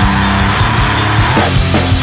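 Grindcore band playing: heavily distorted guitar and bass over pounding drums, with a chord sliding down in pitch about one and a half seconds in.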